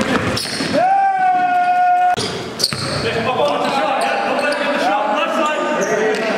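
Indoor basketball game in a gym hall: a basketball bouncing on the hardwood and players' voices carrying in the room. About a second in, a single high tone holds for just over a second.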